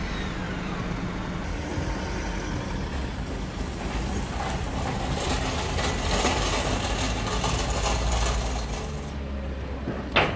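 A Lexus LX SUV drives slowly over wet paving: a steady low engine rumble under a haze of tyre and road noise that grows louder in the middle.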